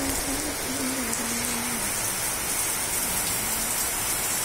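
Heavy rain falling steadily on leaves and tiled paving.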